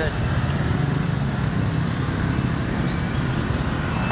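Steady city street traffic noise with a low rumble.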